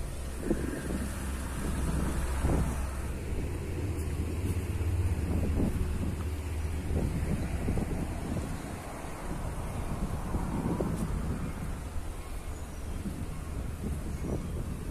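Wind buffeting the microphone: an uneven low rumble that swells and dips throughout.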